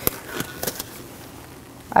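Sterile glove being pulled on and adjusted on the hand: a sharp snap right at the start, then a few faint clicks and soft rustling.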